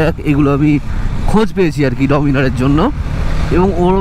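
A man's voice over a steady low rumble from a moving motorcycle.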